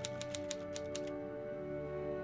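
A quick run of typewriter-style key clicks that stops about a second in, over slow background music with long held notes.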